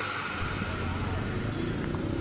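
Street ambience: steady traffic noise with a low hum and faint background voices.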